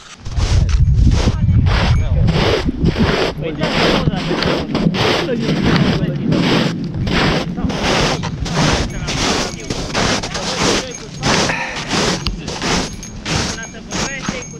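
A hiker's footsteps crunching through snow, about two steps a second, with wind rumbling on the microphone, heaviest in the first couple of seconds.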